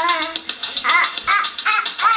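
A little girl's high voice in four short shouted calls.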